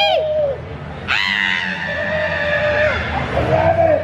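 A shrill scream breaks out about a second in and is held for nearly two seconds, over a steady held tone in the background.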